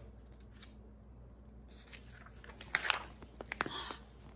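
A picture book's paper page being turned by hand: a brief rustle with a few sharp snaps of the page, a little under three seconds in.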